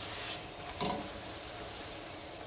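Corn tortilla frying in hot oil in a skillet, a steady sizzle, with one short click from the tongs or spatula against the pan about a second in.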